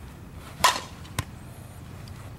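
A softball bat hits a ball in one sharp crack with a brief ring, a little over half a second in, followed about half a second later by a shorter, fainter click.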